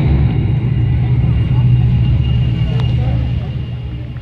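Loud, low rumbling drone from a nighttime castle projection show's soundtrack over outdoor loudspeakers, easing off near the end.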